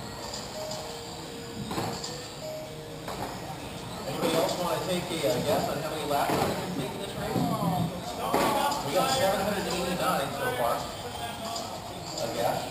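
Electric 1/10-scale RC on-road race cars whining past on an indoor track, with indistinct voices in a large hall; it grows busier about four seconds in.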